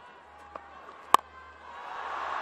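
A single sharp crack of a cricket bat striking the ball about a second in, the loudest sound here, followed by stadium crowd noise swelling into a cheer as the big hit goes for six.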